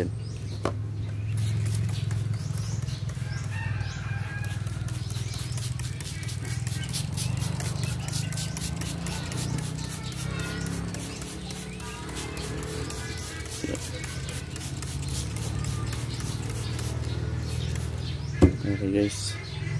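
Music with a steady beat playing in the background, with a few short calls that may be chickens clucking.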